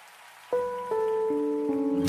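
Opening of a worship song: a soft hiss, then about half a second in a keyboard starts playing single held notes. There are four of them, each starting lower than the one before.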